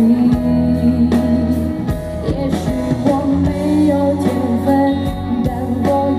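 Live band playing a rock-style ballad with a woman singing over electric guitar, bass and regular drum hits, amplified through a stage PA.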